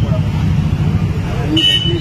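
Steady low rumble of street traffic with a short, high, steady toot near the end, under a man's voice.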